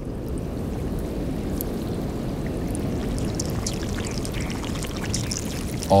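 Glacial meltwater running and gurgling in a narrow channel in the ice, steady throughout, with faint scattered ticks of air bubbles escaping from the melting ice.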